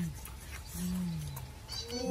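Boys' voices making drawn-out, appreciative "mmm" hums while eating: a short falling hum about a second in, then a louder, held hum starting near the end.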